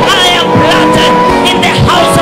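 Loud worship music of long held chords, with voices praying and calling out over it.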